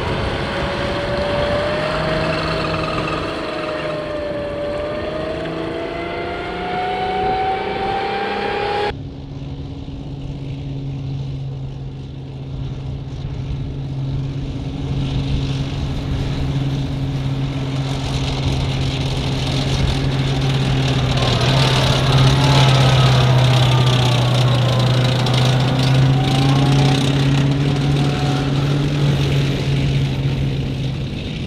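Tracked armoured vehicles driving. First a modified M113 carrier runs with an engine whine that rises steadily in pitch; it ends at an abrupt cut about nine seconds in. Then the steady drone of a Bradley fighting vehicle's engine grows louder as it comes close, a little past two-thirds of the way through.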